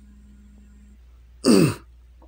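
A man clears his throat once, briefly, about one and a half seconds in, over a faint steady low hum.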